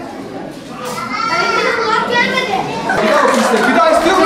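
Children's voices and chatter in a large hall, getting louder about a second in.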